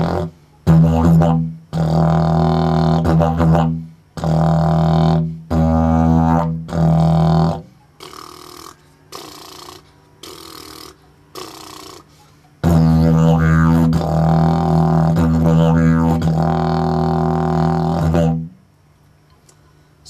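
Cottonwood didgeridoo in C# played with a hard, punchy drone in a string of short phrases with brief breaks. A few softer short notes come in the middle, then one long phrase of about six seconds. It is played with the lip-control technique that adds a looser low drone an octave below the normal drone.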